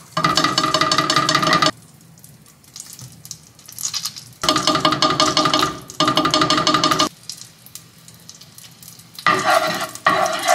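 Spoonfuls of miso hitting melted butter and olive oil in a hot skillet and sizzling. The sizzle comes in three bursts of one to two seconds that start and stop abruptly, with a steady tone running through each, and it is much quieter in between.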